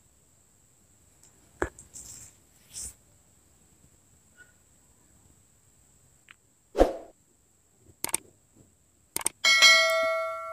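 A few faint knocks from hand and hook handling, then near the end two quick clicks and a ringing bell-like chime that fades out: a subscribe-button animation sound effect.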